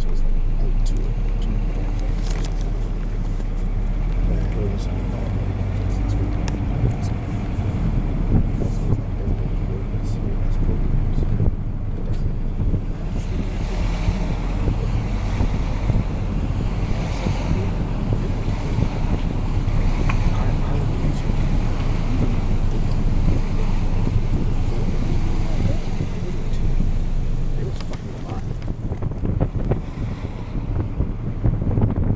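Wind buffeting the microphone as a steady low rumble, with passing road traffic.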